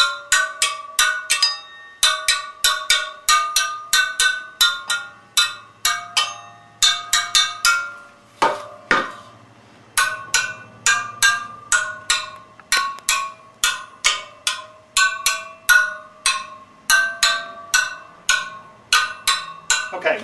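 Steel spokes of a BMW F650's wire-spoked wheel tapped one after another with a screwdriver, each giving a short ringing ping of slightly different pitch, about three to four a second, with a brief pause about halfway through. Every spoke rings and none sounds dead: the spokes are all tight and none needs adjusting.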